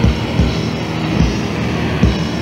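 Death/doom metal from a 1987 demo tape: a slow, heavily distorted guitar sound held under a few low drum hits, with no vocals.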